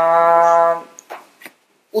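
A woman's voice holding one steady, flat-pitched hesitation sound for about a second. It stops a little before a second in, followed by a couple of faint clicks and a brief dead silence.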